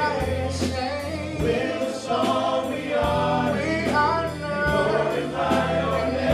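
A group of voices singing a gospel-style anthem together, backed by a live band with bass and a steady drum beat.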